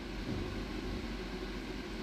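Steady background noise with a low hum, between phrases of speech.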